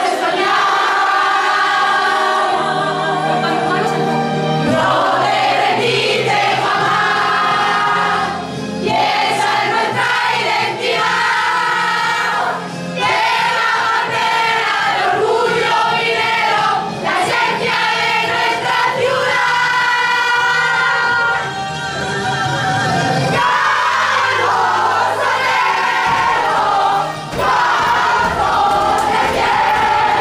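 A group of young women singing a song together in unison, arms linked in a huddle, with the singing running on loud and steady with short breaks between phrases.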